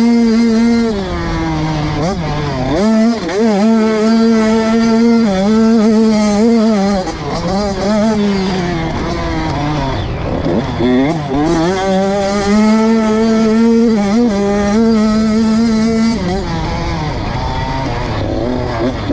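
Motocross bike engine heard from on board, held at high revs along the straights and dropping away several times as the rider rolls off the throttle and shifts for corners, then climbing back up.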